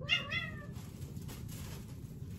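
A pet cat meowing once: a single short meow of under a second, right at the start, rising then falling in pitch.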